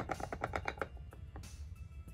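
A makeup brush tapping and swirling in a jar of loose setting powder: a quick run of light taps, about ten a second, for the first second, then a soft brushing hiss. Background music plays underneath.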